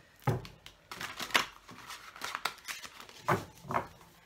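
Hands shuffling a deck of large tarot cards: a string of irregular short slaps and rustles as the cards are worked together.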